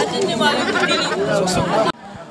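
A woman talking, with other voices chattering behind her; the sound cuts off sharply just before the end.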